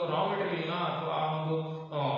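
A man's voice speaking in a steady, drawn-out tone, close to a chant.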